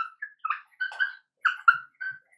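Dry-erase marker squeaking on a whiteboard while writing a word, a quick run of short, high squeaks, one for each pen stroke.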